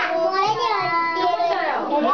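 Many young children's voices overlapping at once, talking and holding drawn-out notes.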